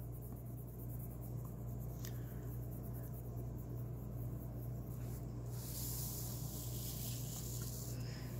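Colored pencil shading on paper: a soft, faint scratchy hiss of the strokes, brighter and hissier in the last couple of seconds, over a steady low hum.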